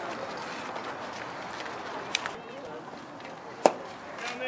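Distant voices chattering around a baseball field, with a faint click about two seconds in and a single sharp knock just before the end.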